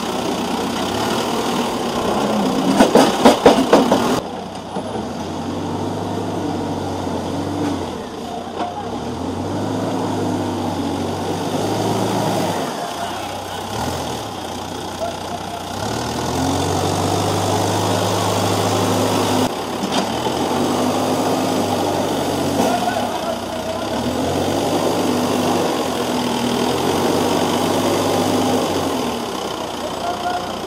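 Case 770 backhoe loader's diesel engine revving up and dropping back over and over as it works the loader bucket. About three seconds in comes a loud burst of clattering as a bucketload of tomatoes tumbles into a tipper truck's bed.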